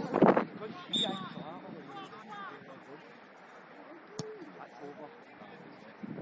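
Distant shouts and calls from players and spectators across an outdoor football pitch, with a short loud sound right at the start and a brief high tone about a second in.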